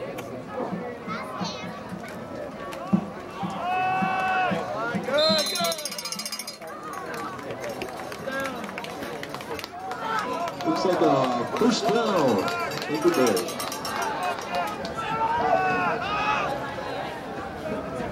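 Several voices yelling and cheering at once around a football play, loudest about four seconds in and again midway, with one sharp knock near the start of the first burst.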